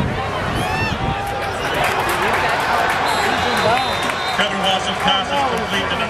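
Spectators' chatter: many voices talking over one another in a crowd, with no one voice standing out.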